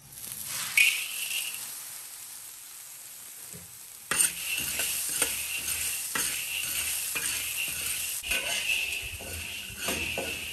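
Metal spatula scraping a hot, still-wet iron wok with a sizzle, then a sudden louder rush just after four seconds as dry soybeans go into the pan. The beans rattle and the spatula scrapes as they are stirred and dry-fried without oil, over a steady sizzle.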